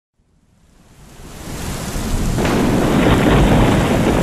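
Thunderstorm sound effect: heavy rain fading in from silence, growing louder, with a low thunder rumble swelling in about halfway through.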